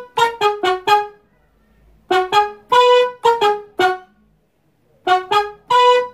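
Electronic keyboard on a trumpet-like brass voice playing the song's brass riff: three short phrases of quick staccato notes, separated by pauses of about a second.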